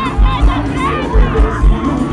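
Live sertanejo band music with a thumping bass beat, about two beats a second, under a loud, shouting crowd, recorded from among the audience.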